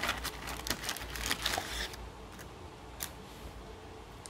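A shiny snack wrapper crinkling and rustling as fingers dig into the package and pull out a thin potato stick: a quick run of crackles over the first two seconds, then a single tick about three seconds in.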